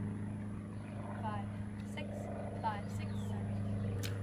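A steady low mechanical hum from a motor, with two short chirps that fall in pitch, the first about a second in and the second about a second and a half later.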